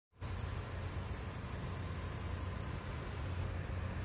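Steady low hum with an even hiss, the kind of background noise left by machinery or the room. A faint high hiss drops out near the end.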